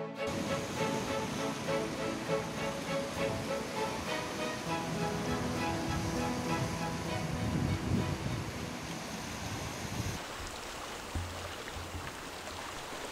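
Background music over the sound of sea surf washing against rocks. Near the end the music drops away, leaving only the surf.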